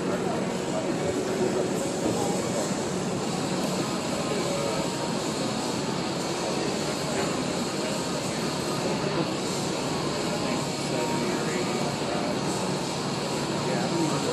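A steady, even mechanical drone fills the room, with indistinct voices murmuring under it.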